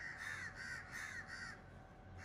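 A crow cawing: a quick, even run of about six short caws, around four a second, faint, stopping shortly before the end.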